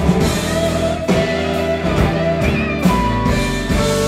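Live rock band playing an instrumental passage: electric guitar playing a lead line with held and bent notes over bass, keyboards and a drum kit.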